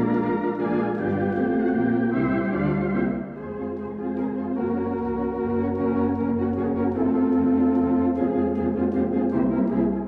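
Conn 651 electronic organ playing sustained chords over a pedal bass line, with a short drop in loudness about three seconds in.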